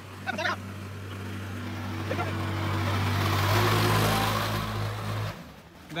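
Diesel engine running under load with a steady low note, joined by a rising rush of noise that peaks about four seconds in. The engine note steps up about three and a half seconds in, and the sound cuts off abruptly near the end.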